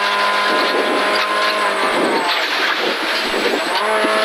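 Ford Fiesta rally car's engine heard from inside the cabin, running hard at high revs. About two seconds in the engine note dips briefly, then climbs steadily again.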